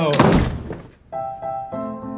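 A door shutting with a heavy thud, dying away within about half a second. About a second in, piano music starts, steady single notes and chords.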